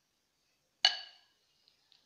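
A metal potato masher strikes the glass mixing bowl once, a little under a second in, giving a short ringing clink as boiled potatoes are mashed.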